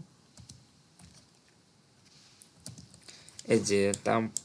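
A few faint, scattered clicks of computer keyboard keys being pressed.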